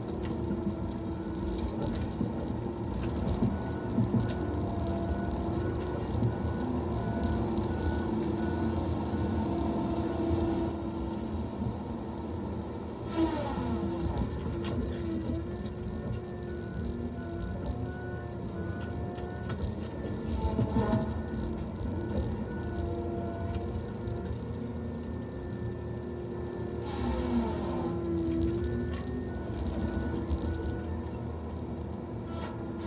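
Tigercat LX870D feller buncher heard from inside its cab: a steady engine and hydraulic drone with held, slowly wavering whines as the felling head works. Two falling whines come about thirteen and twenty-seven seconds in.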